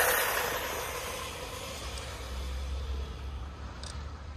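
Brushless RC car (HAILBOXING 2997A) speeding away on asphalt: a burst of tyre and drivetrain noise at the start that fades steadily as the car pulls away.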